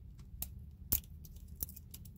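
A few small sharp clicks and light handling noises from a lipstick tube and its packaging being handled, the loudest click just under a second in, over a faint low hum.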